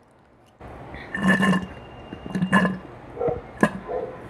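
Close-miked eating sounds: wet chewing and mouth noises in short bursts, followed by a few sharp clicks near the end.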